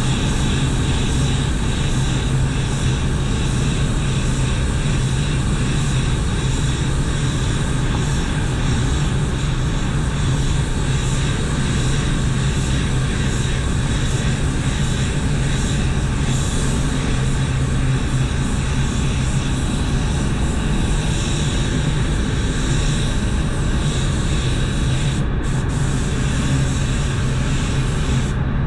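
Automotive paint spray gun hissing steadily as base coat is sprayed. The air cuts off for a moment about 25 seconds in, when the trigger is released, then comes back. A steady low hum from the spray booth's ventilation runs underneath.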